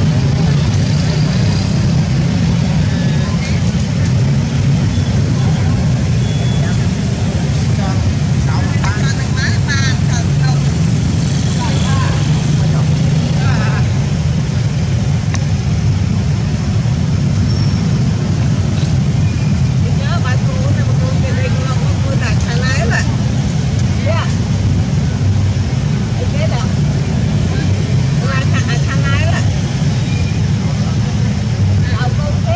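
Steady low rumble throughout, with short high-pitched squeaking calls from the macaques several times: around nine seconds in, around twelve seconds, again from about twenty to twenty-three seconds, and near the end.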